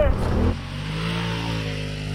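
Polaris RZR Turbo S side-by-side's turbocharged twin-cylinder engine running at a fairly steady pitch as it drives along a dirt track, heard from outside the vehicle. The first half second holds a rushing din of wind and engine inside the cab before it gives way to the outside engine sound.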